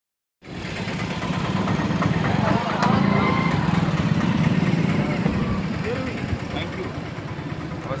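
An SUV's engine running close by at low speed, loudest around three seconds in and easing off afterwards, with people's voices in the background.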